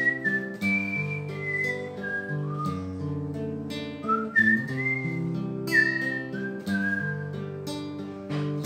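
A man whistling a slow melody over his own fingerpicked acoustic guitar, the whistle holding each note and sliding between some of them.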